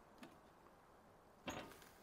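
Near silence with two faint ticks: a tiny one just after the start and a sharper click about a second and a half in.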